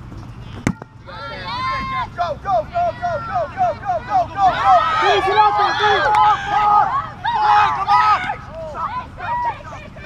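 A rubber kickball is kicked once, a sharp thump, and players then shout and cheer, with rapid repeated calls and overlapping yelling that grow loudest in the middle and fade near the end.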